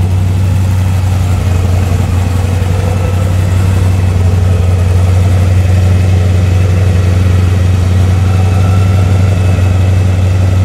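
Supercharged engine of a Toyota Land Cruiser idling steadily with a deep, even hum.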